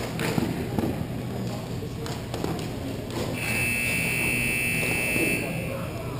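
Arena buzzer sounding one steady, high electronic tone for about two seconds, starting just past the middle, over the knocks of sticks and ball and players' voices on the rink.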